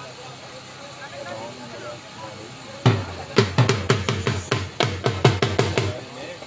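A drum beaten in a quick run of loud strokes, about four a second, starting about three seconds in, over crowd chatter.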